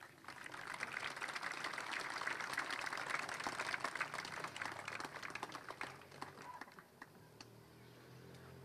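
Audience applause made of many hands clapping. It starts all at once, stays full for a few seconds, then thins out and dies away about six to seven seconds in.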